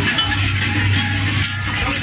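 Large bells worn on the belts of Krampus runners clanging and jangling in a continuous loud din, over a steady low hum.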